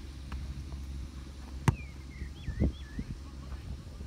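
Outdoor ambience with a steady low wind rumble on the microphone. A sharp click comes a little before halfway, followed by a bird whistling a few swooping notes and a low thump.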